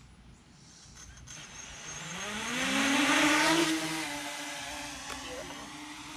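Six-inch FPV quadcopter taking off: its motors and propellers spin up with a rising whine, loudest about three seconds in, then settle into a steady buzz as it flies away.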